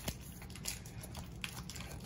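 Faint handling of a stack of Pokémon trading cards, the cards sliding against one another in the hands, with a few soft clicks.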